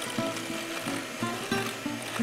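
Electric hand mixer running, its beaters whipping egg whites in a glass bowl, under background music with a melody.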